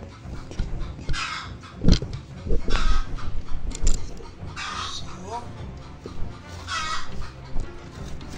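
Harsh calls of a bird, four short ones about two seconds apart, with a few knocks from hands and camera handling, the loudest about two seconds in.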